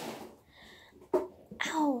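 Quiet stretch with a single click about a second in, then near the end a short vocal sound from a girl that falls in pitch.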